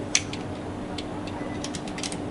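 Hobby side cutters snipping plastic parts off a kit's parts tree: a sharp click just after the start, then several smaller snips and clicks, a quick cluster of them near the end.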